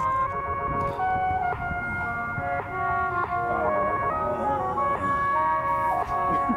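Instrumental backing music with no vocals: held tones that step from note to note every second or so, with a few short pitch glides.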